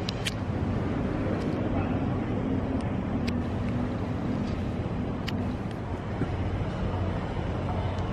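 Steady low rumble of city street traffic with distant murmuring voices and a few short, sharp clicks.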